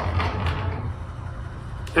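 A small plant-watering robot's drive motor hums low and steadily as it runs along its plastic track, dying away as the robot pulls up at the plant. A short click comes just before the end.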